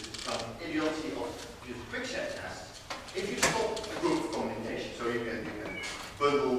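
A man speaking, giving a lecture.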